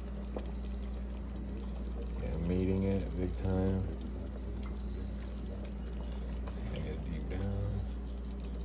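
Thick curry sauce being ladled from a pot and poured onto a plate of rice, over a steady low hum. A voice vocalises briefly without words, about two and a half seconds in and again near the end.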